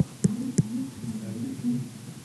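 Two short sharp taps of a stylus on an interactive whiteboard screen as a number is written, followed by a faint low voice humming.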